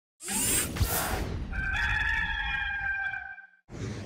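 A rooster crowing once as an intro sound effect: a long, slightly falling call of nearly two seconds, led in by a burst of noise with a thump.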